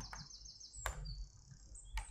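A small bird chirping over and over in quick, high notes, faint in the background. Two sharp laptop keyboard clicks, one about a second in and one at the end.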